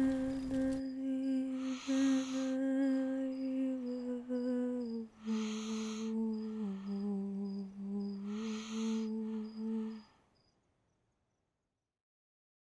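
A woman's voice humming a slow lullaby in long low notes that step gradually downward, with breaths between phrases; it fades out about ten seconds in.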